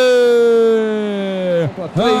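A male sports commentator's long, drawn-out goal shout, one loud held note that slowly falls in pitch and breaks off near the end.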